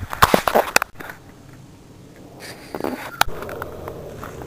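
Footsteps and camera handling in dry woodland litter: a cluster of sharp crackles and knocks in the first second, a quieter stretch, then more crackling and a sharp click about three seconds in.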